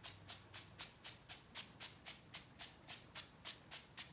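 Fine-mist pump spray bottle of Ulta dewy setting mist pumped rapidly, a quick even run of short hissing sprays at about four a second that stops near the end.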